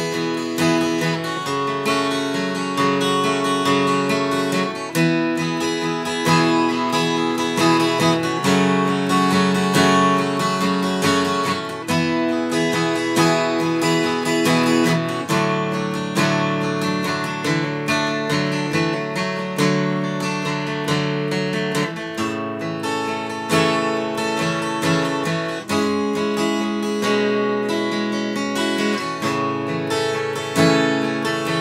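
Martin J-40 steel-string acoustic guitar strummed solo, an instrumental passage with chords changing every few seconds.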